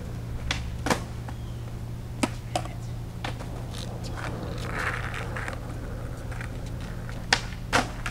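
Skateboard clacking on concrete during ollie attempts: a few sharp clacks in the first few seconds and two more near the end, over a steady low hum.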